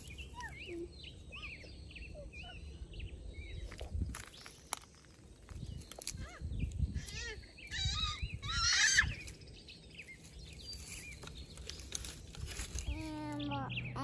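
Small birds chirping and singing. About eight seconds in, a young child lets out a loud, high-pitched squeal, the loudest sound here. A voice follows near the end.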